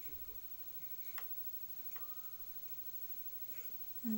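Quiet background with two small sharp clicks, about a second apart.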